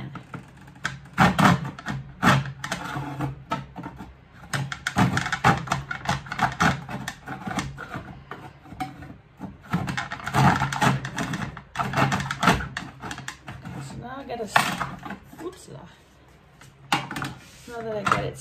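Hand saw cutting a wooden strip in a plastic miter box: quick back-and-forth rasping strokes in runs of a second or two, with short pauses between runs.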